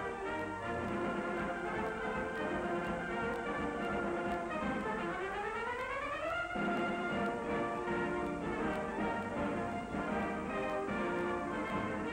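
Orchestral newsreel title music led by brass, with a rising sweep about halfway through that opens into held chords.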